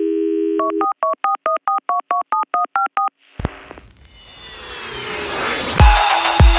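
Telephone dial tone for about a second, then about a dozen quick touch-tone keypad beeps, used as a sample in a music track. A click follows, then a rising whoosh that builds into an electronic beat with heavy kick drums near the end.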